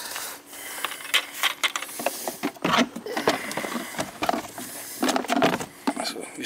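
Irregular plastic knocks, clatter and rubbing as a DeWalt wet/dry shop vac is opened and its filter head is handled.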